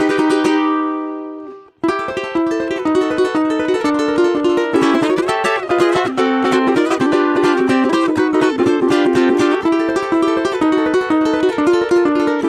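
Solo ukulele: a held chord rings and fades away over the first two seconds, then a fast, unbroken run of plucked notes and chords starts and carries on, heard over a video call.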